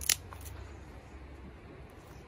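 A single sharp crack of dry wood at the very start, followed by a couple of fainter crackles, over a low steady rumble: twigs snapping or popping at a small stick fire.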